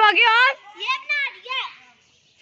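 A young child's high voice calling out several times, the pitch sliding up and down, falling quiet near the end.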